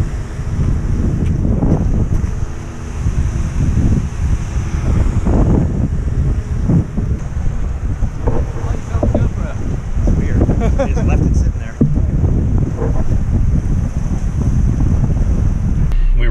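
Loud wind buffeting a GoPro's microphone, a rough, rumbling rush from the camera riding loose on the back of a moving truck.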